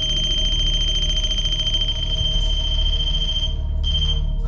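A steady high-pitched electronic tone over a low hum. It cuts off about three and a half seconds in and sounds again briefly near the end.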